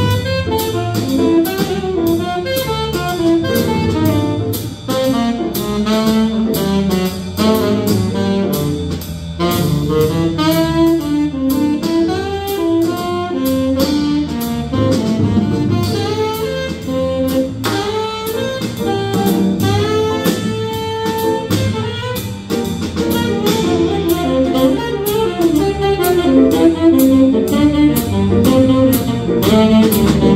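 Live small-group jazz: saxophone playing a busy, moving melodic line over electric bass and drum kit, with steady ride-cymbal strokes keeping time.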